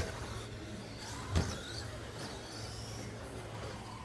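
Electric RC short-course race trucks (Traxxas Slash) running laps: a high motor-and-gear whine that rises and falls as they accelerate and pass. There is a single sharp thump about a second and a half in.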